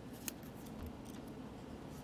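Faint handling of paper sticky-note strips on a workbook page: a few light clicks and rustles, the sharpest click near the start.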